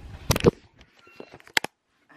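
Brief clicks and rustles in two short clusters, about half a second in and again about a second and a half in, with a few faint ticks between; the sound then cuts out abruptly.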